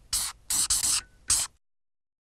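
A logo-animation sound effect: a quick run of short hissing strokes, like paint being sprayed or brushed on, about four of them, ending about a second and a half in.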